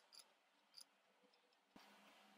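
Near silence, with a few faint clicks of a computer mouse.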